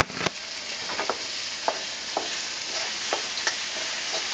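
Tofu, mushrooms and lotus root frying and sizzling steadily in a wok, with scattered clicks and taps as they are stirred with a wooden spatula. A knock right at the start as the camera is set down.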